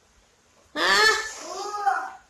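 A toddler's voice babbling out loud in two drawn-out calls, each rising and then falling in pitch, starting about three-quarters of a second in.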